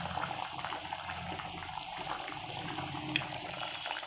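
Mutton gravy curry boiling in a pot, a steady bubbling and popping, with one sharp click about three seconds in.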